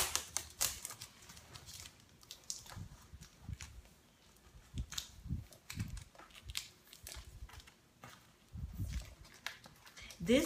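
Cardboard shipping box being handled, with scattered faint clicks and rustles as fingers pick at the packing tape and a few soft low thumps against the box.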